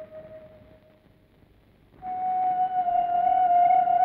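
Background film score: a single held note fades away over the first second and a half, there is a moment of near silence, and then about halfway through a new long, steady note comes in, louder than the first.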